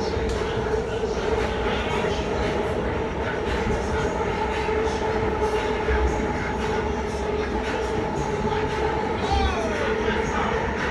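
Interior of a BART Fleet of the Future rail car running: a steady low rumble with a constant hum throughout, and a short falling whine near the end.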